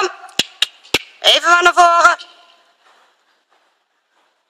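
A person's voice calling out a drawn-out instruction about a second in, after three sharp clicks.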